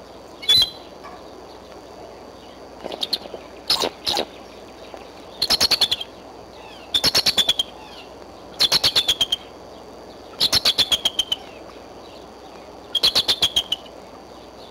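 Bald eagle chatter: a few single high piping notes, then five quick series of six to eight rapid notes, each series falling slightly in pitch.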